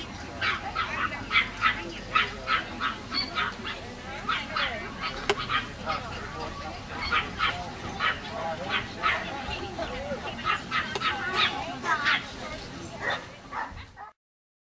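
Dogs barking over and over in short, sharp barks, about two or three a second, with no letup.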